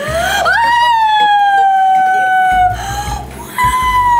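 Woman squealing in delight: a long high-pitched squeal that rises, then slowly falls, and a second squeal starting near the end.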